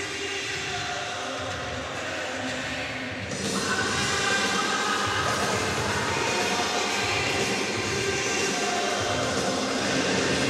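Rock music played over an ice rink's sound system for an ice dance program. It gets louder and fuller about three seconds in.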